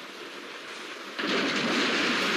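Rushing water on a film soundtrack: a steady hiss of river water that suddenly becomes much louder just over a second in.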